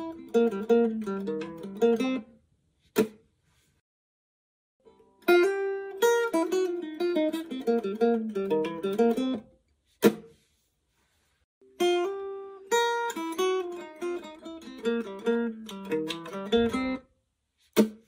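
Ibanez piccolo guitar (EWP14OPN) playing a short, fast single-note lick with alternate picking, using a Wegen Bigcity pick. The lick is played three times with silent gaps between, and a single sharp click falls in each gap.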